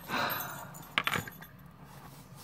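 Small jingle bell and metal trinkets on a handmade junk journal jingling as the book is handled, followed by two light knocks about a second in.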